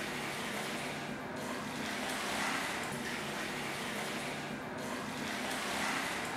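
Steady rushing noise of pool water with a faint low hum underneath.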